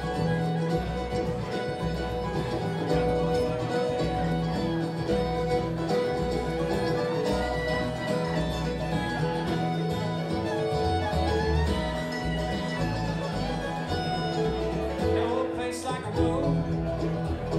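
Live bluegrass band playing an instrumental passage: five-string banjo, fiddle, upright bass, acoustic guitar and mandolin together, with held fiddle notes over a steady pulsing bass line.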